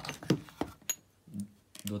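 Metal CO2 cartridges clicking and clinking against each other and the cardboard box as one is pulled out: a few sharp clicks in the first second, the last with a brief metallic ring.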